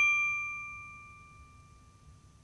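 A single bell-like chime, struck just before and ringing out with a clear high tone that fades away over about a second and a half.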